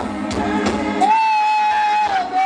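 Singing over music with a steady beat; about halfway through, a voice holds one long high note.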